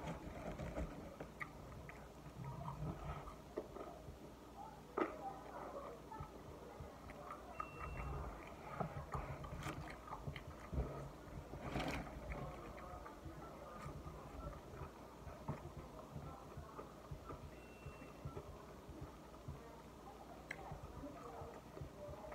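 Faint chewing of a double cheeseburger and French fries, with scattered small clicks and taps; the sharpest come about five and twelve seconds in.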